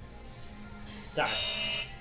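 Gym interval timer's electronic buzzer sounding once for under a second, about a second in, marking the end of a work interval, over quiet background music.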